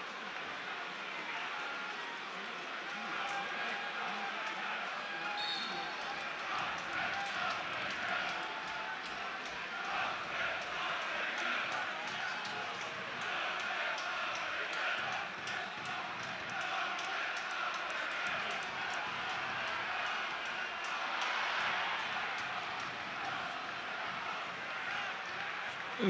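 Steady din of a football stadium crowd, a dense mix of many voices.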